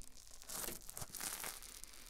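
Wet spoolie brush scraped and brushed in and around the silicone ear of a 3Dio binaural microphone: close, scratchy bristle strokes coming unevenly, quieter for the first half second.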